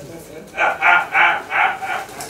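A person's voice in a quick run of four or five short, evenly spaced syllables, about three a second.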